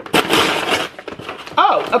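A shipping package being torn open by hand: about a second of tearing and rustling.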